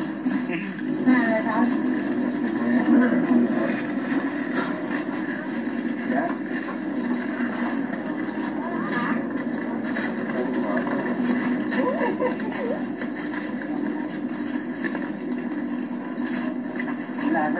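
Indistinct, faint voices of people talking over a steady background noise, with no single clear event standing out.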